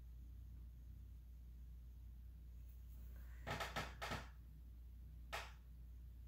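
A quick cluster of three or four light clicks and knocks a little after three seconds in, then one more near the end, as a plastic blush compact is handled and put down.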